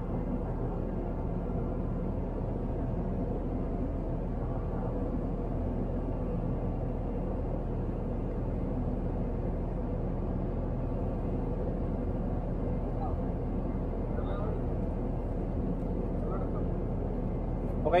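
Steady low drone of the Liebherr LTM1230-5.1 mobile crane's engine running, heard from inside the operator's cab.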